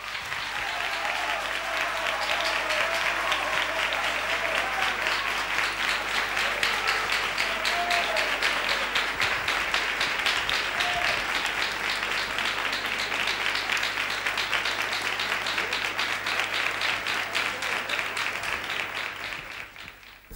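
Studio audience applauding steadily at the end of a song, the clapping dying away near the end, with a few faint voices among it.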